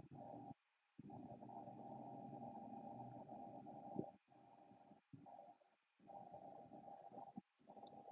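Near silence: a faint low rumble that cuts in and out several times, with one small tick about four seconds in.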